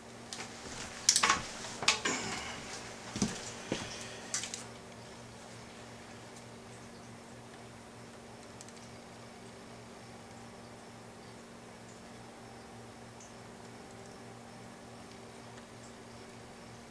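Handling noise: a run of clicks and clatters over about the first four seconds as a soldering gun and a test-lead clip are handled on a stone countertop, then only a faint steady hum.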